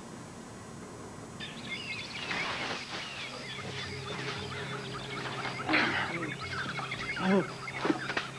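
Jungle ambience of many birds chirping and calling, starting about a second and a half in, over a steady low hum, with a louder short call near the end.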